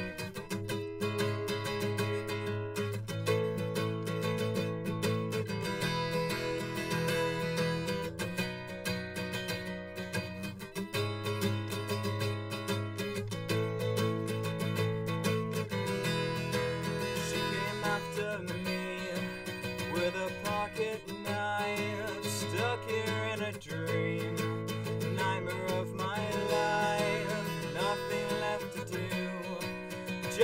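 Acoustic guitar strummed in a steady rhythm, the chord changing about every two and a half seconds.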